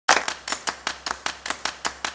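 A fast, even run of sharp clicks, about five a second.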